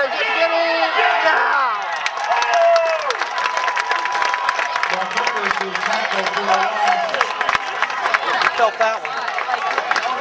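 Football crowd cheering, shouting and clapping after a big play, with voices close to the microphone at first and rapid clapping through the middle.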